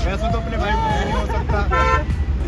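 A short vehicle horn toot, about a quarter of a second long, near the end, over chatter of several voices and a steady low traffic rumble.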